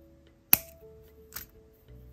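Flush cutters snipping through a jewellery head pin: one sharp click about half a second in, then a softer click. Soft background music with sustained notes plays underneath.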